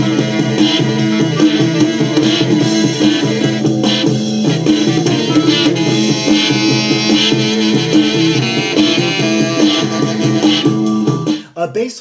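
Early-1970s psychedelic rock recording playing, driven by a persistent bass line; the music cuts off about eleven seconds in.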